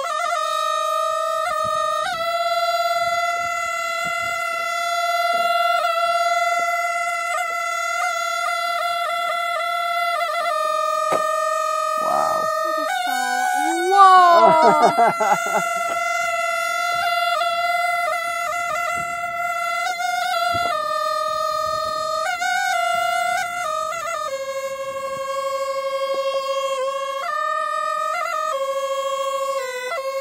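A small hand-held Qiang wind instrument played with circular breathing: one unbroken melody with no pause for breath, holding long steady notes and stepping between a few pitches. Around the middle there is a brief louder flourish with sliding pitches.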